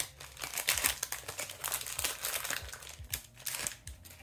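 Foil wrapper of a hockey card pack crinkling and rustling in irregular crackles as it is opened by hand.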